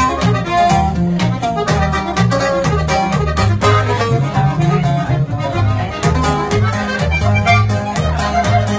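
Norteño band playing an instrumental passage: accordion carrying the melody over a tololoche (upright bass) line that alternates bass notes in a steady two-beat, with sharp rhythmic strokes on the off-beats.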